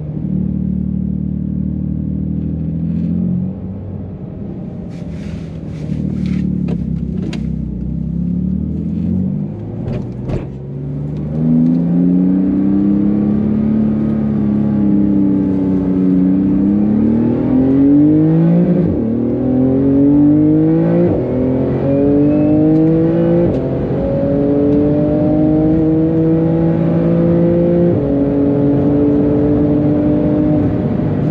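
Porsche 911 GT2 RS's twin-turbo flat-six heard from inside the cabin, running at low revs at first with a few sharp clicks, then accelerating, its pitch climbing and dropping back at several upshifts in the second half.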